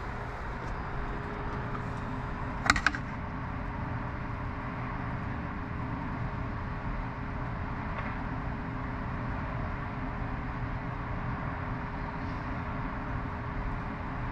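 Steady background hum of room ambience with a faint constant tone. About three seconds in, a brief clatter of clicks as the camera is handled.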